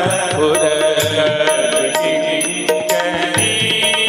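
A man singing a Hindi devotional bhajan, his voice wavering and sliding in pitch, over held instrumental tones and a steady pattern of percussion strikes.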